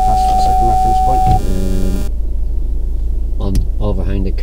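Car's reversing parking sensor sounding one steady continuous tone, the warning that the car is very close to an obstacle behind it, cutting off about one and a half seconds in as reverse gear is taken out.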